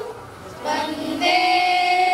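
A group of schoolgirls singing together into a microphone, unaccompanied. They pause briefly just after the start, then begin a new phrase that settles into a long held note.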